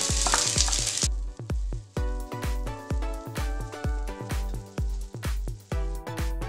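Ginger and garlic sizzling in hot ghee with mustard seeds, the sizzle cutting off suddenly about a second in. Background music with a steady beat runs throughout and is all that is heard for the rest.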